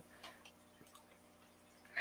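Near silence: room tone with a faint steady hum and a few faint ticks in the first second.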